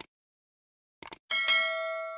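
Subscribe-button animation sound effect: a mouse click, then two quick clicks about a second in, followed by a bright notification-bell ding that rings on and fades.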